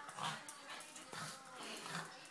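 A pug making three short vocal noises, a little under a second apart, excited as it waits for its dinner.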